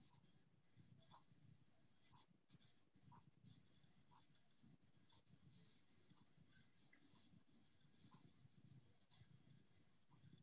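Near silence: faint room tone with soft, irregular scratchy rustles.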